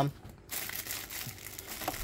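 Plastic packaging crinkling and rustling as hands work it open, a soft steady rustle after a spoken word at the start.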